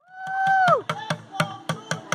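Street drummer playing upturned plastic buckets with sticks: a fast, irregular run of sharp hits. At the start there is a held note that slides down in pitch, and it is the loudest moment.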